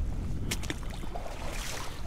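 Kayak hull running into shallow water over an oyster-shell reef: a few sharp clicks about half a second in and a hissing scrape of shell and water in the second half, over a steady low wind rumble on the microphone.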